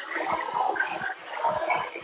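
Close-up chewing and mouth noises picked up by a phone microphone, with irregular soft thumps.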